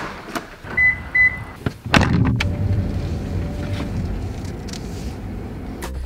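A door latch clicks and two short high beeps sound. Then, about two seconds in, an electric garage door opener starts and runs steadily for about four seconds with a low rumble.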